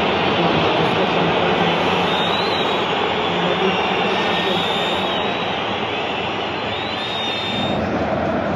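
Football stadium crowd noise: thousands of fans chanting and shouting in a steady, dense roar, with a few brief high whistles over it.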